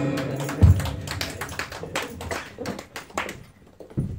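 Sparse applause from a small audience, a few people clapping unevenly and dying away within about three seconds, after a single low thump near the start.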